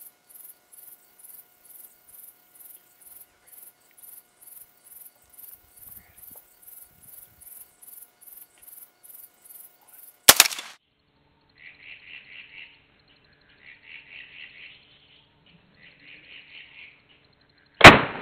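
A single loud rifle shot about ten seconds in, and another loud shot with a rolling tail just before the end; the first is the two hunters' rifles fired together on a countdown, heard as one report. Before the first shot, insects chirp high and steadily at about three pulses a second, and between the shots three short bursts of chirping follow.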